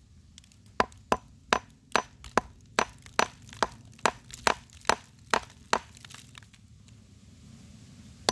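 Small steel-headed hammer chipping at a pale fossil-bearing rock: about thirteen sharp strikes at a steady pace of roughly two and a half a second, stopping about six seconds in. The blows are chipping the stone to free fossil sea-snail shells embedded in it.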